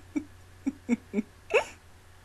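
A woman laughing in a run of short, hiccup-like bursts, each dropping in pitch, about five in all, with a higher, longer one near the end.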